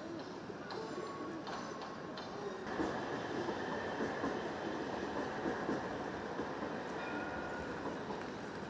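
Steady outdoor city background noise, a low wash that grows louder about three seconds in, with a few faint brief high tones over it.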